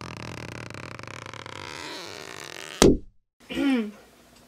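A buzzing intro sound effect under the title card, ending in a sharp thump just under three seconds in. After a short silence comes a brief vocal sound from a person.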